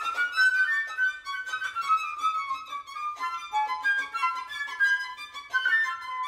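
Contemporary chamber music played live by a quintet of flute, clarinet, violin, cello and accordion, with the violin bowing: a busy, restless texture of short, overlapping high notes.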